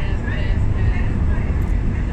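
Steady low rumble of a moving train, heard from inside the passenger carriage, with faint voices over it.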